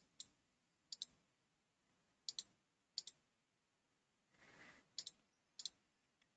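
Faint computer mouse-button clicks at scattered moments, most in quick pairs about a tenth of a second apart, with near silence between them.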